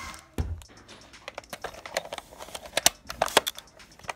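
Plastic Nerf blaster and foam darts being handled and loaded: irregular sharp plastic clicks and rattles, with a dull thump about half a second in.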